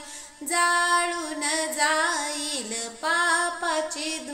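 A woman singing a Marathi devotional song to Sant Gajanan Maharaj, in long, wavering held notes with a short break at the start and another just before three seconds in.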